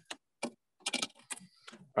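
A run of light, irregular clicks and taps as wires and plastic connectors are handled inside a metal battery box.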